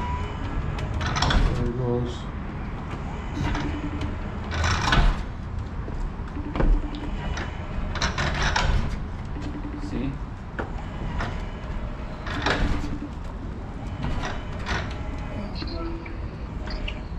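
Xsto ZW7170G electric stair-climbing dolly carrying a washing machine down concrete steps. Its motor runs in short spells, and the loaded dolly clunks down onto the next step every few seconds.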